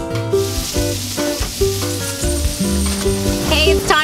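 Food sizzling as it fries on a flat-top griddle, a steady hiss that starts just after the beginning, with music playing underneath.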